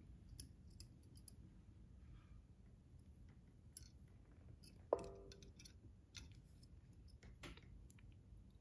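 Near silence with faint, scattered small clicks from hands handling fly-tying materials and tools at a vise. About five seconds in there is one sharp, short tick with a brief ring.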